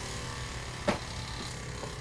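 Small electric motor running steadily on a rotating platform, a faint even hum, with a single click about a second in.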